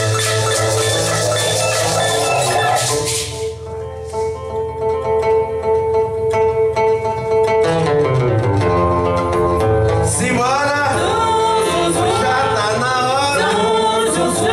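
Live Brazilian band music. Drums and shakers play with the band until about three and a half seconds in, then long held notes from the horns and keyboard ring out almost without percussion. From about ten seconds the singers come in and the percussion returns.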